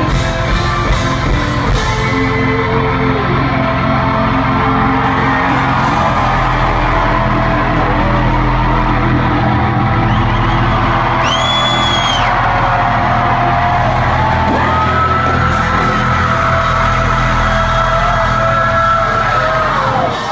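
Live hard rock band playing loudly through a large hall's PA: electric guitars, bass and drums, with a long held note in the second half.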